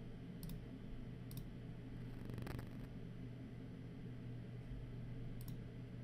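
Computer mouse clicks, a few crisp press-and-release clicks spread over several seconds, with a short rattling burst about halfway through, over a steady low hum.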